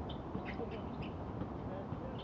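Distant outdoor basketball-court ambience: a steady hiss with faint voices and scattered short, high chirps or squeaks.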